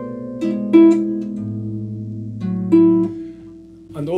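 Concert grand pedal harp playing a slow improvised jazz phrase: a handful of plucked notes at uneven spacing, some left ringing long, mixing note lengths with rests for a lyrical line. The strings are damped about three seconds in, leaving only a faint ring.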